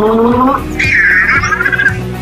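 Warbling robot voice sounds for the Anki Cozmo toy robot: a rising babble, then a higher chirp that drifts slightly down, over background music.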